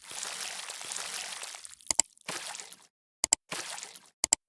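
Sound effects of an animated subscribe-button and bell graphic: airy swooshes broken by two quick double clicks like a mouse click, about two seconds in and again just past three seconds.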